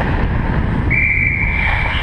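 Ice hockey referee's whistle blown once, one long steady blast starting about halfway through, stopping play. It sits over loud rumbling wind noise on a skating player's helmet-mounted camera.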